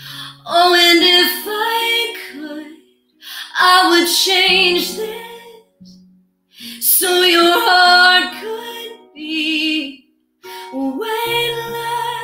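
A woman singing a slow musical-theatre ballad with vibrato, accompanying herself on acoustic guitar. Four sung phrases, each a couple of seconds long, with short breaks between them.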